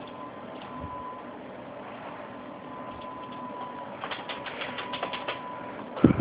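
A quick run of about ten light computer keyboard clicks about four seconds in, over steady faint hiss with a thin high hum.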